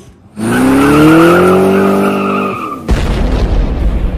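Channel-intro sound effect: a loud vehicle-like sound whose pitch climbs steadily for about two seconds, cut off by a deep, rumbling boom a little under three seconds in.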